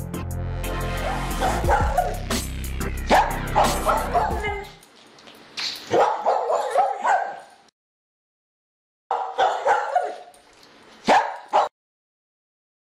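Electronic music with a steady bass beat and a dog barking over it. The music cuts off about five seconds in, and the barking goes on alone in short runs, breaks off for about a second and a half, comes back twice and stops shortly before the end.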